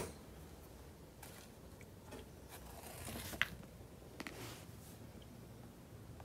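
A tennis ball knocking into small wooden blocks on a hard tiled floor: faint rolling, then a sharp wooden knock about three and a half seconds in and a lighter one about a second later as the blocks are pushed and clack together.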